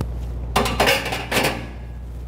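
Stainless-steel parts of a downdraft vent module being handled: a click, then two short bursts of metal clattering.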